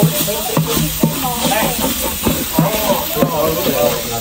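Chilli paste and lemongrass sizzling as they fry in a large aluminium pot, with a spoon stirring and scraping against the pot and short clicks scattered throughout.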